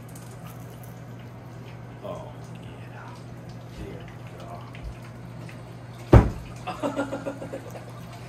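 A steady low hum throughout, with a sharp knock about six seconds in, followed by a brief muffled voice.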